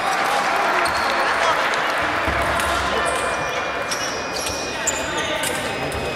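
Echoing sports-hall background: scattered voices with intermittent dull thuds on the wooden floor.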